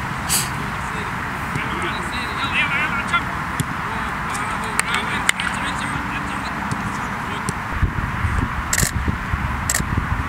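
Sound of a football training session: players' voices calling out over a steady background, with a few sharp knocks of a football being kicked about halfway through and near the end.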